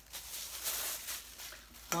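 Clear plastic bag rustling and crinkling in the hands as a metal water bottle is handled and drawn out of it, in irregular scrunches.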